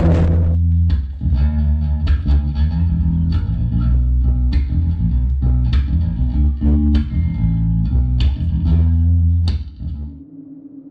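Five-string Warwick electric bass playing a riff of plucked low notes, which stops just before the end. A rush of noise dies away in the first half second.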